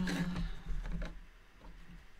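A sharp click and, about 0.7 s later, a second knock from a hand handling the tapestry loom. Under them a woman's drawn-out hesitant "uhh" fades out after about a second.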